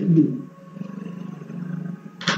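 A man's voice finishes the word "b", then holds a low, steady hum for over a second, a drawn-out hesitation sound while he thinks.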